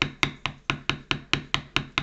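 A metal leather-stamping tool struck rapidly with a hammer, about five sharp taps a second, each with a short ring, as a pattern is stamped into the leather.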